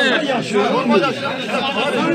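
Speech only: several voices talking over one another in a crowd.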